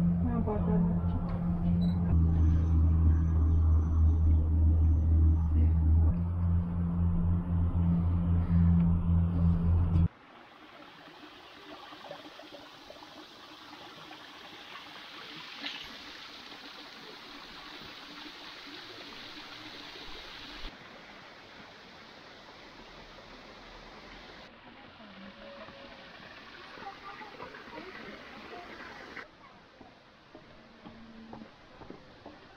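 A steady low hum and rumble inside a moving cable car gondola for about ten seconds, then, after a sudden cut, the much quieter trickle and splash of a small garden waterfall and fountain running into a pond.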